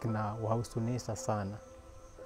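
A man speaking in Dholuo for about a second and a half, then a short pause.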